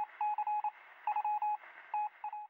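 Intro sound effect: quick runs of short electronic beeps, all at one pitch, with brief pauses between the runs.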